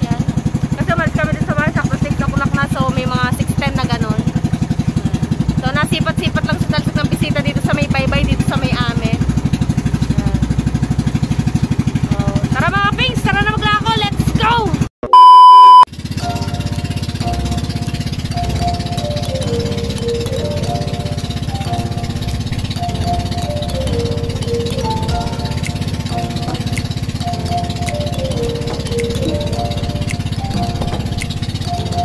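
Voices over a steady low rumble for about the first half. Then a loud steady beep lasts about a second, and background music follows for the rest.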